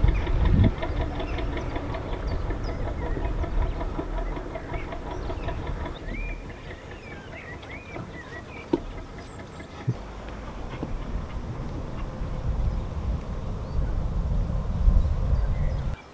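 A narrowboat's diesel engine running with a steady rapid chug under the boat, with wind rumble on the microphone; the engine grows quieter about six seconds in. Birds chirp briefly around the middle, and there are two light knocks a little later.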